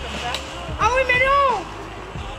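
A girl's high-pitched drawn-out vocal cry about a second in, rising then falling in pitch and lasting under a second.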